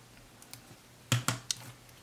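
Three quick, light clicks about a second in, from small tools and stickers being handled against a paper planner page on a desk.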